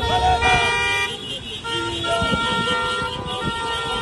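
Car horns honking in long held blasts, one in the first second and another from about half-way on, with people shouting over them.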